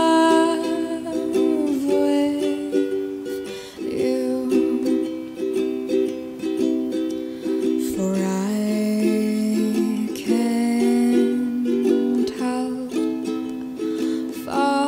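Background music: a slow ukulele song, plucked notes and chords with no sung words.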